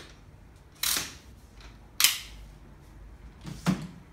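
Bugaboo Cameleon3 stroller's adjustable handlebar being moved and clicking into its height settings: three sharp plastic-and-metal clicks, the last with a dull knock.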